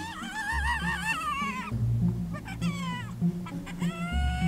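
Spotted hyena cub whining while begging to nurse from its mother: a long, high, wavering squeal that falls away at its end, then a shorter falling whine about two and a half seconds in. Background music plays underneath.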